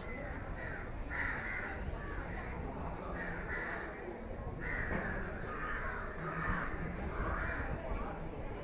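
Birds calling over and over, short harsh calls in quick irregular succession, over a low steady rumble.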